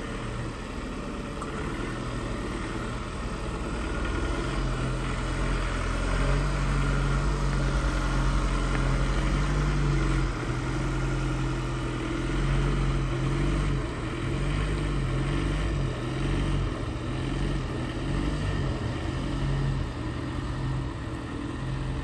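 Ford Transit box van's diesel engine running at low revs while the van reverses slowly, a steady low hum that grows a little louder a few seconds in.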